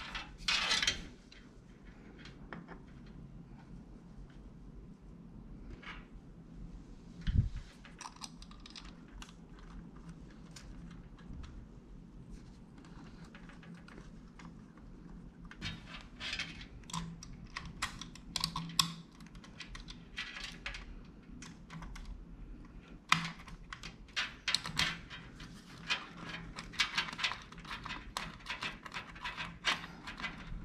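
Small irregular clicks and taps of the pump head of an AIO liquid cooler being handled and its mounting thumb nuts turned by hand on the CPU bracket standoffs, thickening in the second half. One low thump about seven seconds in.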